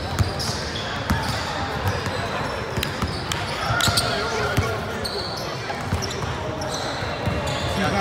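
Basketballs being dribbled on a hardwood gym floor: irregular thuds echoing in a large hall, under a background of indistinct voices.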